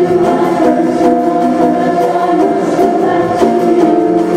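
A concert choir singing in several parts, holding chords that shift every second or so.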